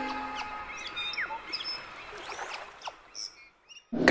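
The tail of the intro music fades out, leaving birds chirping with short, sweeping calls that die away about three seconds in.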